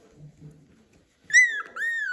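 Young poodle puppy whimpering: two short, high-pitched cries about a second and a half in, each quickly rising and then falling in pitch.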